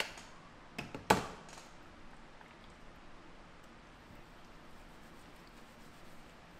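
Four sharp taps or knocks in the first second or so, the last the loudest and ringing briefly, then only faint room hiss.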